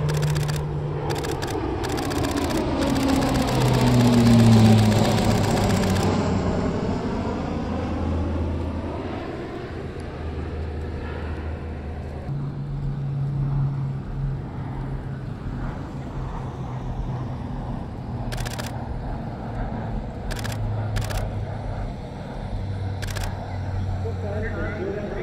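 C-130 Hercules four-engine turboprop flying past: the propeller drone swells to its loudest about four seconds in and drops in pitch as the aircraft passes, then carries on as a steadier, more distant drone.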